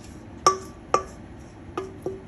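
Stainless steel mixing bowl knocked while water is swirled in it to rinse out leftover marinade: two sharp metallic taps about half a second apart, each ringing briefly, and a fainter one near the end.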